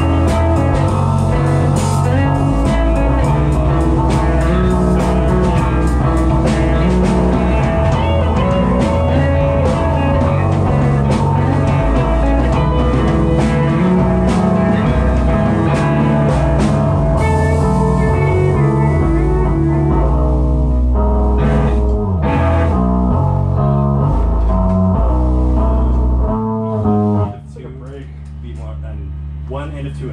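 Live rock band playing loud, with electric guitar and bass guitar through amplifiers in a small room. The playing stops abruptly near the end, leaving a quieter held low note.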